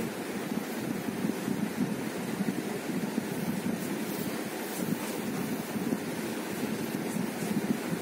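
Steady low rushing noise, like moving air on the microphone, with no distinct events.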